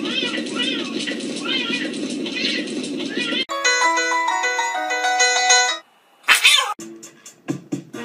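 Cats yowling, one arching cry about every second, over a steady background hum. Three and a half seconds in this cuts to a short, plinking piano-like melody. After a brief gap there is one loud, short high cry, then a few light clicks.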